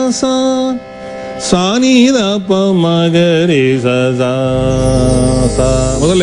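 A man singing a Carnatic sargam exercise over a steady drone. A held note ends just under a second in, then he sings the descending line 'sa ni da pa ma ga ri sa' in falling steps, sliding between the notes. A low hum comes in near the end.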